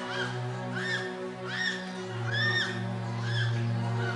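Sustained keyboard chords with a series of short, high-pitched cries, each rising and falling in pitch, repeating about once a second.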